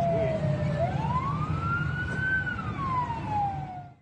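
Emergency vehicle siren wailing in a slow rise and fall, climbing from about a second in and falling again toward the end, over a steady low rumble of city traffic.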